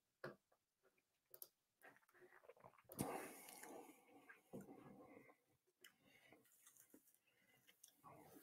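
Near silence: room tone with a few faint clicks and one brief soft sound about three seconds in.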